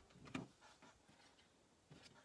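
Near silence: faint handling of cardstock in a hand-held circle paper punch, with one soft click about a third of a second in.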